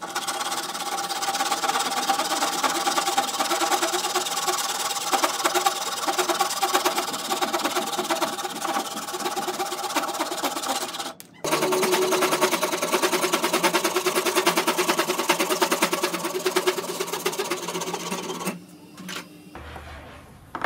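Hand saw cutting through a clamped strip of hardwood with quick, steady strokes, in two bouts with a brief break about eleven seconds in. The sawing stops a second or so before the end.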